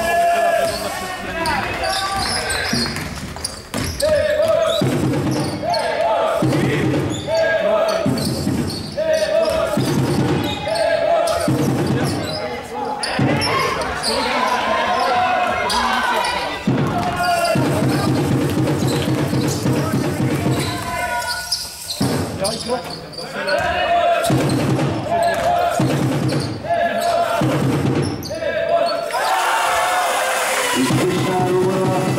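Basketball game in a gym: the ball bouncing on the hardwood court amid voices, over a loud pattern that repeats about once a second.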